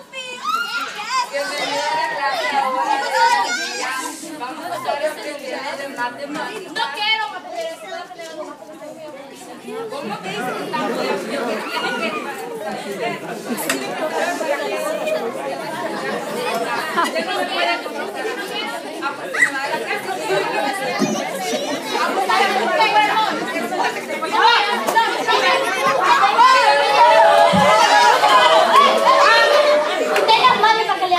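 Many children's voices chattering and talking over one another in a large hall. The chatter dips briefly, then builds and is loudest near the end.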